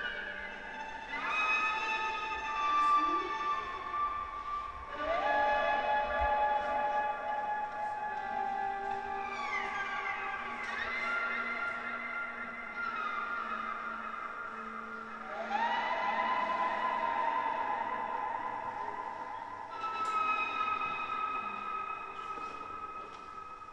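Solo violin playing slow, long held notes, often two sounding together, sliding up into each new note every few seconds.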